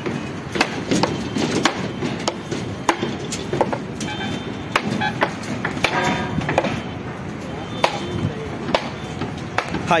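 Irregular sharp knocks and bangs of building-site work, like hammering on steel rebar and timber formwork, sometimes several in a second, over faint background voices.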